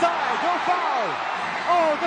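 Live basketball game sound: arena crowd noise with excited voices, and many short rising-and-falling squeaks as players scramble and dive for a loose ball on the hardwood court.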